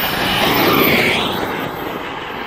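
Electric ducted-fan whine of a Freewing F-22 model jet passing close by low over the runway. It grows loudest about a second in, and its pitch falls as it goes past.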